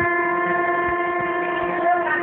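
A singing voice holding one long, steady note for several seconds, the held end of a sung line.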